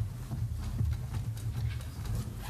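Footsteps on a stage: irregular knocks over a steady low rumble.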